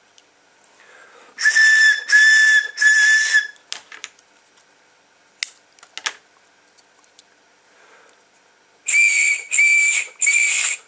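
A short drinking-straw pipe, bottom end sealed with a finger, blown across the top: three breathy whistling notes, then a couple of scissor snips as the straw is cut shorter, then three higher-pitched notes near the end. The shorter straw gives the higher note.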